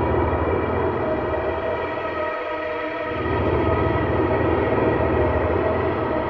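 Dark ambient electronic music: a sustained synthesizer drone of steady held tones over a low rumble, which thins briefly about two seconds in and then swells back.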